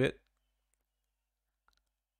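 A man's voice finishes a word, then near silence broken by two faint, short clicks about a second and a half in, from a computer mouse being clicked.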